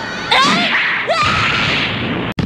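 A sharp whoosh sound effect for a judo throw being dodged, with a fighter's strained shout, starting about a third of a second in.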